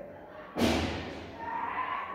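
A single heavy thud about half a second in, dying away over about a second.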